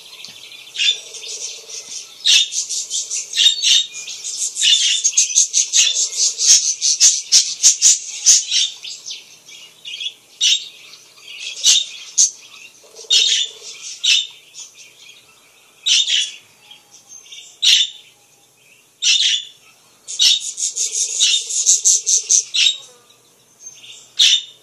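Budgerigars chattering: rapid, overlapping high chirps in a busy run for the first nine seconds, then separate chirps every second or two, and another dense burst of chatter about twenty seconds in.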